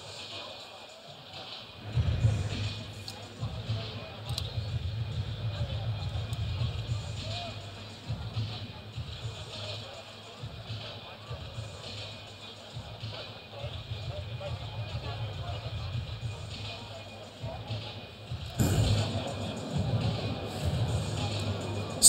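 Music with a heavy bass starts about two seconds in and plays over the chatter of an arena crowd.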